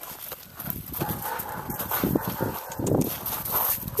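Footsteps crunching on packed snow, a run of irregular steps and scuffs that come thicker about two to three seconds in.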